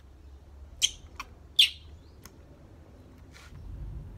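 Baby macaque giving two short, high-pitched squeaks while sucking milk from a bottle, the second dipping slightly in pitch, with a few faint clicks between.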